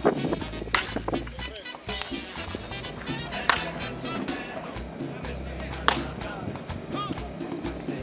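Background music with a steady beat, with a few sharp cracks of a bat hitting pitched baseballs, the loudest about three and a half and six seconds in.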